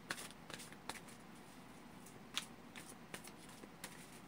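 A tarot deck being shuffled by hand, cards sliding and snapping together in faint, irregularly spaced clicks.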